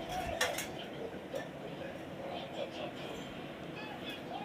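Faint voices in the room with a couple of light clicks or clinks in the first second and a half.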